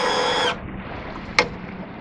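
Outboard's electric power tilt-and-trim pump motor whining steadily as it raises the four-stroke outboard, cutting off suddenly about half a second in. A single sharp click comes a little under a second later.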